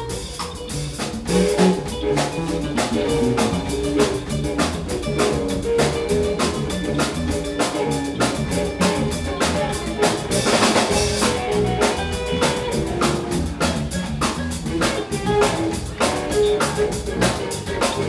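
Live instrumental jam on electric guitar, bass guitar and drum kit, the drums keeping a busy steady beat under sustained guitar notes. A cymbal wash swells about ten seconds in.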